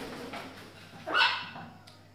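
A large parrot giving one short, loud, harsh squawk about a second in, just after flying in and landing.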